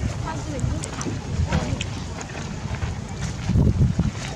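Wind rumbling on the microphone, with faint voices in the background and a stronger buffet near the end.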